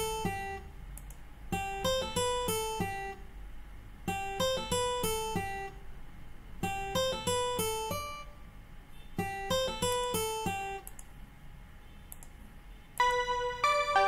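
A sampled acoustic guitar plugin (Ample Guitar M Lite II) playing a short arpeggiated figure in an FL Studio loop, the same phrase repeating about every two and a half seconds, five times. Near the end a different, denser keyboard-like melody starts.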